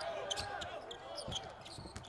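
Live basketball game sound: a ball bouncing on the court a few times, with faint voices from the floor behind it.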